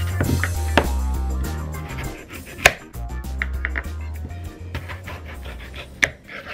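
A kitchen knife cutting through peeled taro and knocking on a wooden cutting board: a few sharp knocks, the loudest about two and a half seconds in. Background music with a steady bass line plays throughout.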